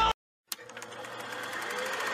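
The film sound cuts off, and about half a second later a rapid, even mechanical clatter fades in, growing steadily louder, like a small machine running.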